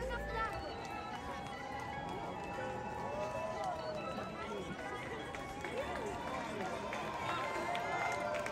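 Footsteps of a large crowd of runners on a cobbled street, mixed with the chatter and calls of many voices from runners and onlookers.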